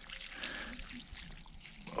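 Faint trickle of water running from the open end of a garden hose and pouring onto soil in a vegetable bed.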